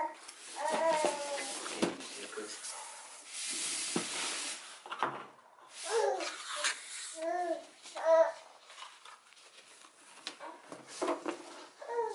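A young child babbling in short, high-pitched vocal bursts, with soft rustling and handling of gift-wrap paper and ribbon between them.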